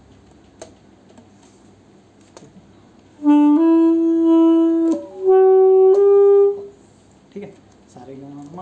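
Saxophone played. A short low note leads into a held note. After a brief break comes a second held note slightly higher, each about a second and a half long.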